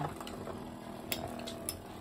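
Two Metal Fight Beyblade spinning tops, Gravity Pegasus and Storm Pegasus, whirring steadily in a plastic stadium. A few sharp clicks come as they knock against each other.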